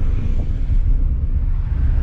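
Steady low rumble of a Volkswagen Gol heard from inside the cabin while driving: engine and road noise with no distinct events.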